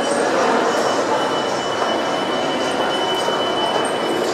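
Steady hubbub of a busy indoor shopping mall concourse, a dense wash of background noise with faint ticks, and a thin, steady high-pitched tone running through most of it.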